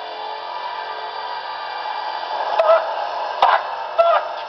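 Horror-film soundtrack: a steady drone of sustained tones, broken by two sharp, sudden hits a little under a second apart in the last second and a half.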